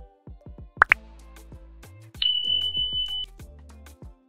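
Instrumental background music with a bass line. About a second in come two quick rising plop sounds, and from about two seconds in a single high, steady ding-like tone holds for about a second and is the loudest sound: the pop-up sound effects of an on-screen subscribe button.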